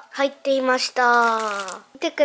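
Speech only: a woman talking, with one long drawn-out syllable about halfway through.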